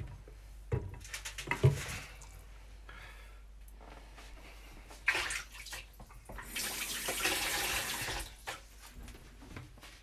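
A few light knocks from handling at the pan, then a kitchen tap running for about three seconds, rising to its fullest flow midway.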